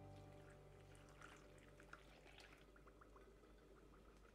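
Water poured from a container onto dry cornmeal in a plastic bowl, heard faintly as a soft pour with small splashes and drips.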